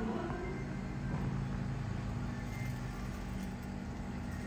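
A steady low droning hum.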